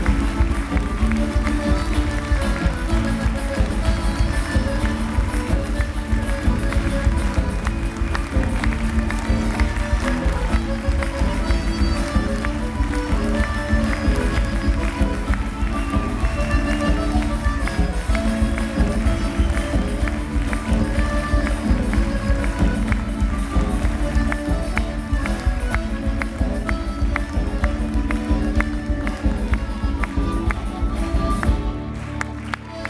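Live folk band playing a fast dance tune with guitars and drums, with a steady, dense beat, heard from the audience in a theatre hall.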